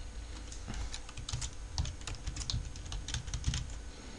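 Typing on a computer keyboard: a run of unevenly spaced key presses as a short word is typed in.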